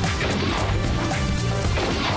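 TV show theme music with a steady driving beat and crashing percussion hits.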